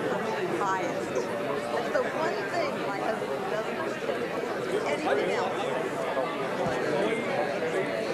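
Audience chatter: many people talking at once in small conversations, a steady hubbub of overlapping voices with no single speaker standing out.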